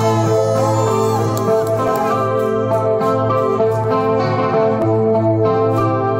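Heavy metal band playing live: sustained electric guitar chords over a steady low bass note, with a few notes bending in pitch in the first couple of seconds.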